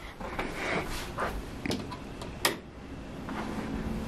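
Shuffling and handling noises of someone moving about a small room, with a few light knocks and a sharp click about two and a half seconds in as a light switch is flipped on.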